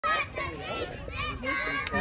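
Several children's high voices chattering and calling out at once, overlapping.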